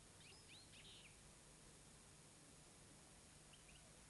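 Near silence: faint hiss with a few faint, short, high bird chirps in the first second and two more near the end.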